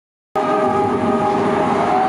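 Loud sustained chord of held electronic tones over the noise of a cheering stadium crowd, cutting in abruptly about a third of a second in.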